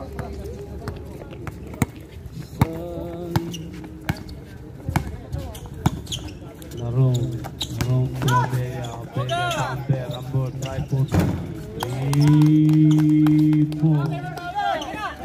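A basketball dribbled and bouncing on an outdoor concrete court, with scattered knocks and shouts from players. Near the end a man holds one long, loud, low call.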